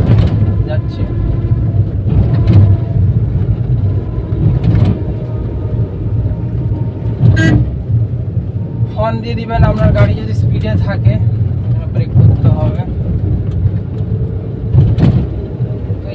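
Steady engine and road rumble inside a moving Suzuki car's cabin. There is a single sharp knock about seven seconds in, and some brief talk about halfway through.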